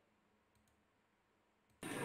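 Near silence with a few faint clicks, and a man's voice coming in just before the end.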